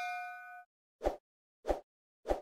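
Notification-bell 'ding' sound effect ringing with a few steady tones and cutting off about two-thirds of a second in, followed by two short pops about half a second apart.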